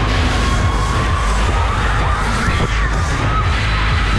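Passengers on a spinning Dance Jumper fairground ride shouting and screaming over loud ride music with a heavy bass.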